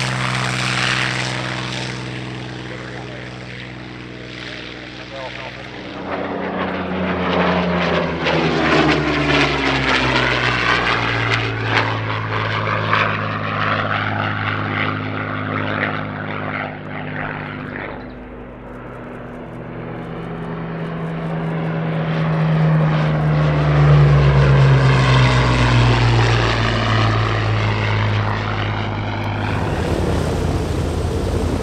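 Second World War propeller fighters running their V12 piston engines at high power. Two passes go by, each swelling louder and then falling in pitch as the aircraft goes past.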